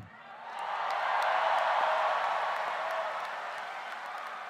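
A large crowd cheering and applauding, swelling up about half a second in and easing off toward the end.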